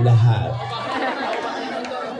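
Indistinct chatter of several people talking at once close by, loudest in the first second.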